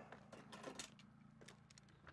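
Near silence with a few faint clicks and taps in the first second, as a metal awning pole is handled and lifted out from inside a motorhome doorway.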